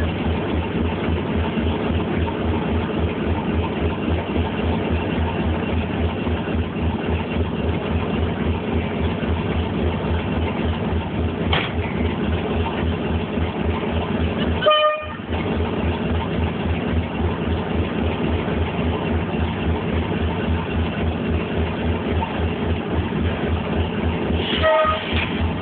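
A pair of Class 37 diesel-electric locomotives, 37194 and 37901, working hard as they pull away, heard from a carriage behind them with a steady low, even engine beat. About fifteen seconds in there is a brief toot.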